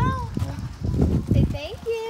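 Indistinct voices with three low, dull thumps about half a second apart.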